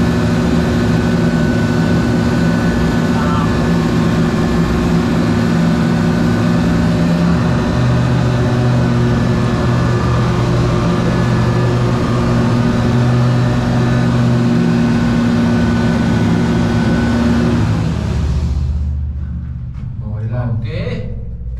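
Deck crane machinery running loudly and steadily onboard ship during a slewing-bearing rocking test: a hum of several steady low tones over a whirring noise. Its tone changes partway through, and it fades down near the end.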